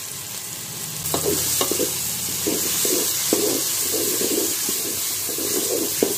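Drumstick and brinjal pieces frying in oil in a metal pot, sizzling, while a wooden spatula stirs and scrapes them with repeated strokes and a few taps against the pot. The sizzle grows louder about a second in.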